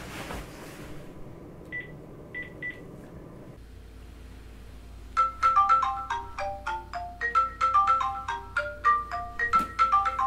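Mobile phone ringing with a marimba-style ringtone: a quick tinkling melody of short xylophone-like notes that starts about five seconds in and keeps going. Before it come a soft rustle of bedding and three short high beeps.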